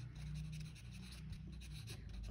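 A pen writing on paper: faint scratching of the tip as a few words are written by hand, over a low steady hum.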